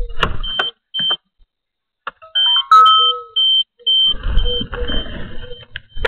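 A string of short, evenly repeated high electronic beeps, with a brief run of stepped tones about two seconds in. Low handling rumble sits under the second half. The sound drops out entirely for about a second near the start.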